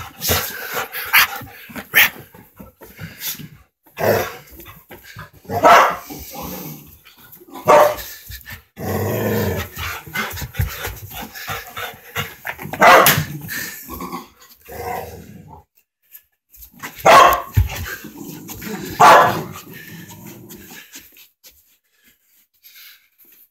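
Dogs barking and growling in rough play, with loud single barks at irregular intervals a few seconds apart and lower growling in between.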